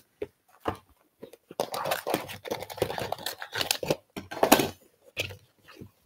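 Plastic craft-paint bottles being pulled out of a clear vinyl zippered bag: irregular clicks and knocks of bottles against each other and the table, with rustling of the vinyl bag as hands reach in.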